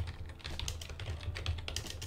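Typing on a computer keyboard: a quick, uneven run of keystrokes.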